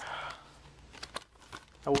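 Plastic packaging on a Blu-ray case crinkling briefly as it is handled while its security stickers are being picked at, followed by a couple of light clicks from the case.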